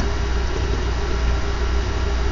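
A steady low rumble under an even hiss, unchanging through the pause.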